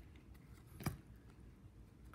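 Faint handling of paper trading cards as one is moved off the top of a hand-held stack, with one short sharp click of card on card a little before halfway through.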